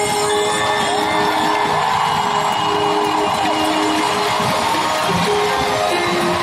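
Live band music through the arena sound system, with held sustained notes, while the crowd cheers and whoops.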